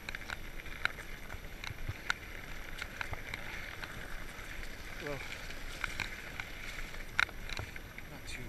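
Fat bike rolling over a dirt trail: steady tyre and riding noise with irregular clicks and knocks from the bike over bumps, the loudest a double knock near the end. A short gliding squeak about five seconds in.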